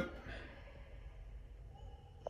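Quiet room tone with a faint, steady low hum. No distinct sound events.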